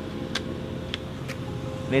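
A few short, sharp clicks of a clear plastic blister pack being pried open by hand, over a steady hum of road traffic.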